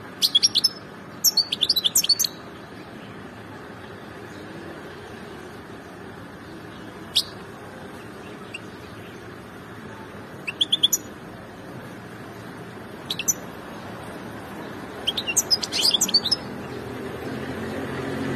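Caged finch calling in short bursts of quick, high chirps and twitters, separated by pauses of a few seconds.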